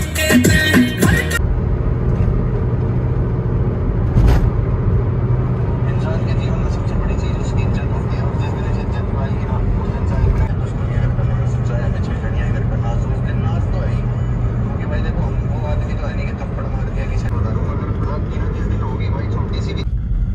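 Steady engine and tyre rumble heard inside a Suzuki car's cabin while driving on a highway, after music cuts off about a second in. There is a single short knock about four seconds in.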